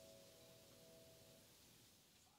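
The final chord of a Hellas upright piano dying away, very faint, its ringing fading out about a second and a half in.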